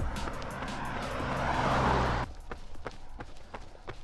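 A car passing close by on a highway, its tyre and engine noise rising to a peak and then cut off suddenly about two seconds in. After that comes a runner's quick, even footsteps on pavement, about three to four a second.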